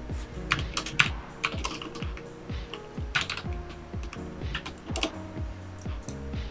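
Computer keyboard keys clicking in short irregular runs as a search term is typed, over steady background music.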